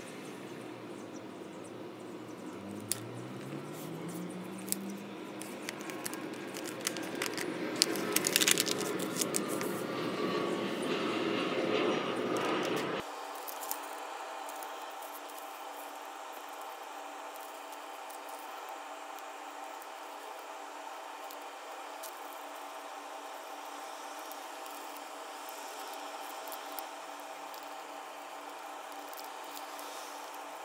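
Scissors snipping through folded paper, with crisp clicks and paper rustling in the first part. About thirteen seconds in the sound changes abruptly to quieter paper folding and handling over a steady hiss.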